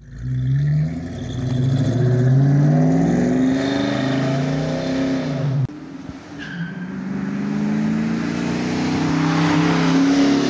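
Ford SN95 Mustang GT's V8 accelerating, its pitch rising. A little past halfway the sound cuts off suddenly and a second pass starts, the engine again climbing in pitch.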